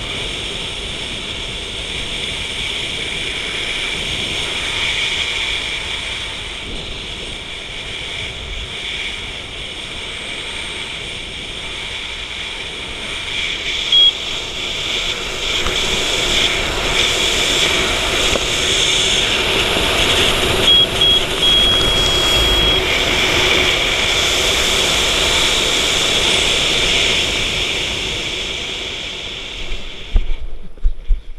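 Steady wind rushing over the microphone of a helmet camera during a parachute descent under canopy, louder in the second half. A short high electronic beep sounds about halfway through and a longer one a few seconds later.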